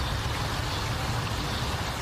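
Steady outdoor background noise: an even hiss over a low, fluttering rumble, with no distinct event.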